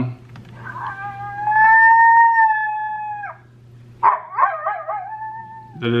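FoxPro Fusion electronic predator caller's speaker playing stored animal calls as it is stepped through its presets: one long held call that drops in pitch at its end, then after a short gap a different, wavering call.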